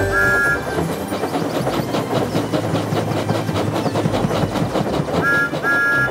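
Steam tank locomotive approaching with a passenger train, running with a steady rhythmic rattle. A short two-note whistle sounds at the very start and again near the end.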